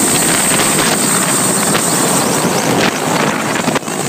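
Mil Mi-8 twin-turbine helicopter running close by: loud, even engine and rotor noise with a steady high whine, and wind buffeting the microphone.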